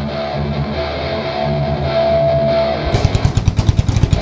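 Live thrash metal band playing: distorted electric guitars hold a riff, and about three seconds in the drums come in with a run of rapid hits under the guitars.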